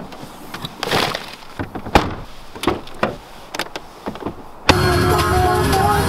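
Clicks and knocks from a Ford Fiesta's tailgate being opened and the car being loaded, with one sharp thump about two seconds in. Loud music starts abruptly near the end.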